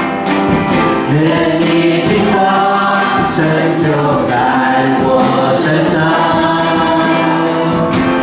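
Live church worship band: male and female voices singing a Mandarin worship song together over digital piano and guitar, with long held notes.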